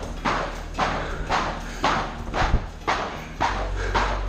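Heavy battle rope slammed down onto a gym floor mat again and again, about two slams a second, each a sharp slap.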